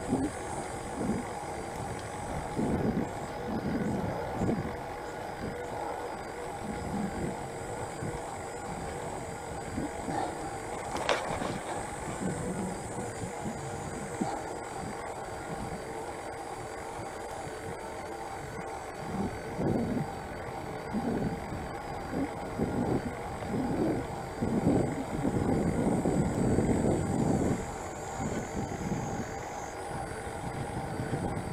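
Wind buffeting the microphone of a bicycle-mounted camera while riding, with uneven low rumbling gusts that grow strongest near the end. A faint steady whine runs underneath, and a single knock comes about eleven seconds in.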